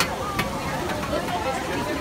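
Faint, indistinct voices of people nearby over a steady murmur of outdoor background noise, with a single sharp click about half a second in.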